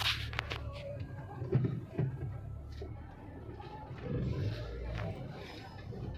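Indistinct voices of people talking at a distance over a steady low rumble, with a few sharp clicks near the start.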